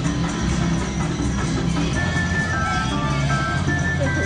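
Tarzan video slot machine playing its bonus-round music, with a run of short, high chime notes from about halfway in as the win total counts up.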